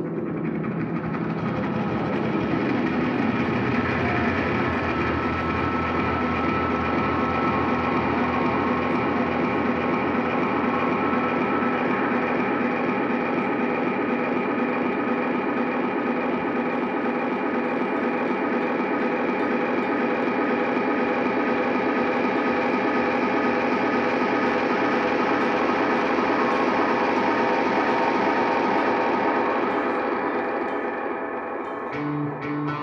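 Live band holding a loud, dense drone of sustained tones, likely distorted electric guitar through effects. It swells over the first couple of seconds and then holds steady, with no clear drum beat.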